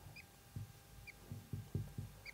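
Marker pen writing on a whiteboard: a few short, faint, high squeaks about a second apart, with soft low knocks from the pen strokes.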